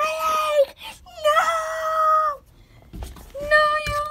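A child's voice making long, drawn-out wailing cries at a steady pitch, three in a row, the mock crying of a pretend injury. A low thump or bump comes just before the last cry.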